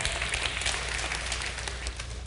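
Congregation applauding: a steady wash of many hand claps in a large hall.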